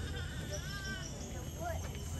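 African painted dogs (African wild dogs) giving faint, high twittering calls, short notes that rise and fall in pitch, with distant voices.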